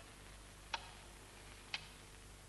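Two sharp ticks exactly a second apart, over a faint steady hiss.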